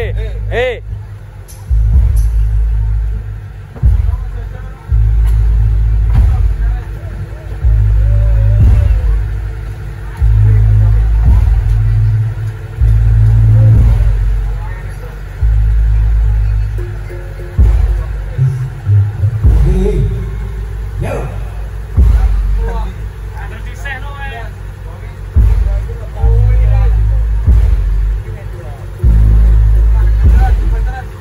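Jaranan gamelan music with a heavy low end: deep booms that start suddenly and fade, roughly every two seconds, with voices faint in the background.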